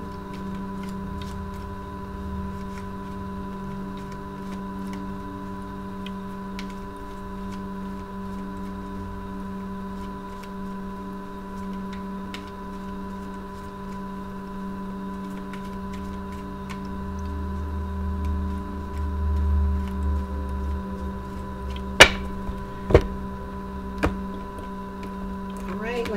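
A steady hum of several held tones, with faint ticking from a deck of tarot cards being shuffled. Near the end come three sharp clacks as the cards are handled.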